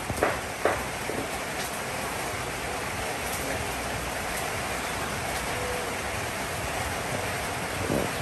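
Steady rain falling, with a few short knocks in the first second.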